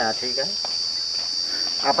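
Steady high-pitched drone of insects.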